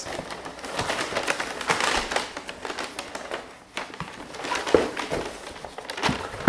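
Cardboard shoe boxes being opened by hand and the paper wrapping inside rustled and crinkled, with many small taps and scrapes of cardboard.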